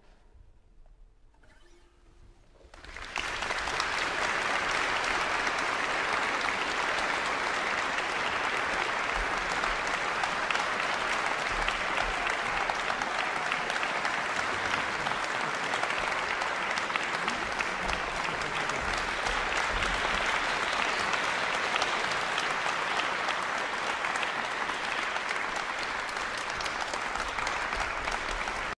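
Concert audience applauding, breaking out about three seconds in after a near-silent pause and then clapping steadily.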